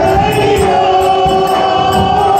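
Rajasthani Holi folk song: a man singing into a microphone with other voices joining, over a steady beat of chang frame drums played with hand and stick.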